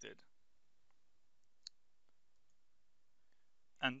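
A single short computer mouse click, about halfway in, against near-silent room tone.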